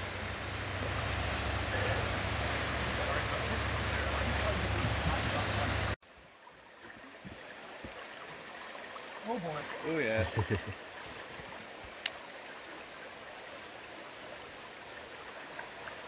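Creek water rushing over rocky riffles, loud and steady. About six seconds in it cuts off abruptly to the quieter, gentler flow of the stream.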